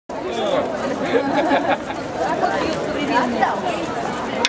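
Crowd chatter: several people talking at once, overlapping voices.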